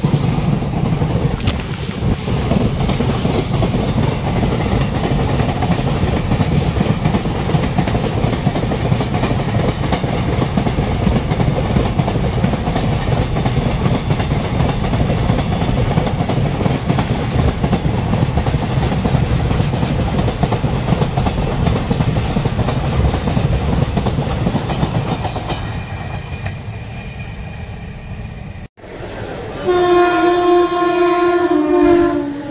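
Container freight train passing close by: a steady rumble with the wagons' wheels clattering over the rails, fading as the last wagons pull away. A train horn starts just at the end.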